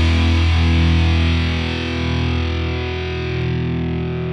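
Doom metal passage: a distorted electric guitar chord held and ringing with no drums, its treble gradually fading away in the second half.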